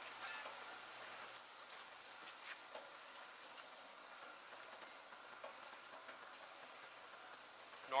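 Slider bed belt conveyor running, faint and steady: a low hum with a thin higher whine and a few light ticks.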